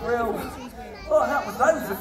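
Several people's voices talking at once, unclear chatter in a large hall.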